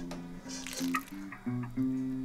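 Background acoustic guitar music. About half a second in there is a brief noise as the glass lid is lifted off a steel cooking pot.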